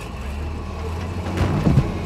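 Low, steady engine rumble of a CAT backhoe hoisting a casket, with a sharp metallic clank about a second and a half in.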